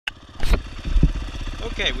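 Dirt bike engine idling steadily, with two sharp thumps in the first second.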